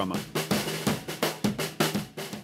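Vintage 1968 Ludwig drum kit with a Brady snare and Sabian cymbals played in a quick, steady pattern: snare and kick strokes, several a second, with cymbals ringing over them.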